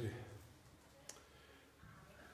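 A man's voice trailing off, then a quiet pause with one faint, short click about a second in.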